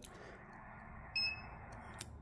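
A single short, high electronic beep about a second in, over faint hiss, as the automatic antenna tuner's tuning cycle starts with its tune button held down.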